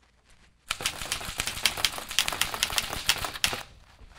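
Keys of a red manual typewriter being struck in a fast, dense run of clacks for about three seconds, starting just under a second in.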